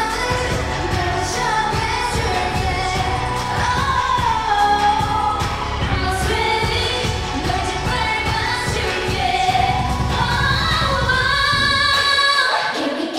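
K-pop dance-pop song with a steady pounding beat and deep bass, with female voices singing over the track into handheld microphones.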